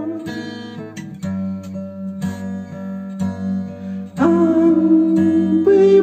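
Acoustic guitar played alone, plucked notes over a steady low bass note, then a man's singing voice comes back in about four seconds in.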